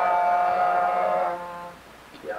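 A long held note of a man's chant, steady in pitch, fading out about a second and a half in.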